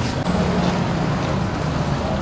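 A steady low motor hum, like a vehicle engine running nearby, over general outdoor background noise.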